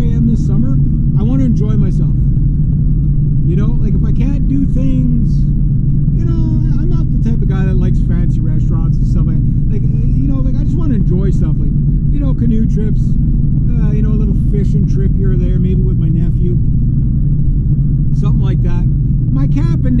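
Steady low road and engine rumble inside a Honda Civic's cabin while it drives along, with a man talking over it.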